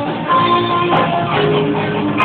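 Live rock band playing, with an electric guitar taking held lead notes over drums.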